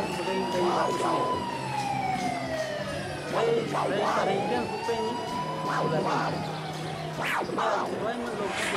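A siren-like wail played through the band's sound system from the DJ's turntable rig. It rises and falls slowly, about one cycle every four seconds, over a low steady hum, with short shouts over it.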